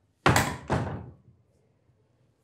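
A wooden door banging: two heavy thuds about half a second apart, the first louder.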